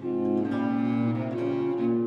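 Early Baroque sacred motet with basso continuo: bowed low strings hold sustained notes over a plucked continuo accompaniment, moving to a new chord every half second or so.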